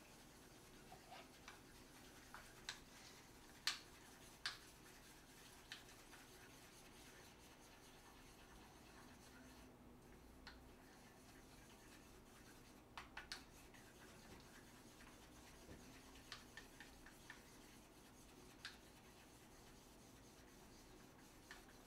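Chopsticks beating eggs in a small bowl: faint, scattered clicks and light scrapes against the bowl over near-silent room tone, in small clusters about four seconds in and again around thirteen seconds.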